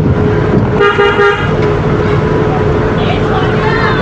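Car running in traffic, heard from inside the cabin as a steady engine and road rumble, with a short vehicle horn toot about a second in.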